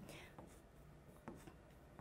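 Chalk on a chalkboard, faint: a few short taps and strokes as quick slash marks are drawn.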